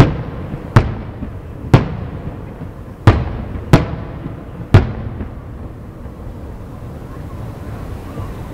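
Aerial firework shells bursting overhead: six sharp booms about a second apart, each with a short echoing tail, the last about five seconds in.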